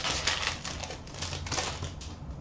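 Crinkling and crackling of a 2015-16 Upper Deck Series 2 hockey card pack's wrapper as it is torn open and the cards are handled, in two bursts: one right at the start, one near the end.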